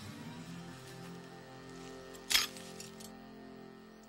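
Soft background music in sustained notes, with one sharp metallic snap a little over two seconds in: a steel leg-hold trap springing shut.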